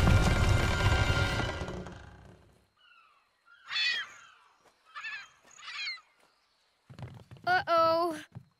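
Cartoon crash of a toy ship running aground on an island: a loud rumbling noise that dies away over the first two seconds or so. It is followed by a few short cries, each falling in pitch, and a louder voice near the end.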